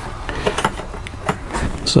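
A few light clicks and knocks of the plastic door-prop tab on a Norcold RV refrigerator's door hinge as it is pulled out and handled.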